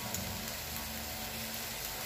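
Steady sizzling hiss of food cooking, under a faint steady hum.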